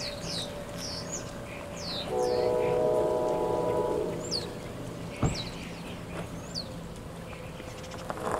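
Locomotive air horn sounding one steady multi-note chord for about two seconds, starting about two seconds in. Birds chirp in short falling notes throughout, and there is one sharp click about five seconds in.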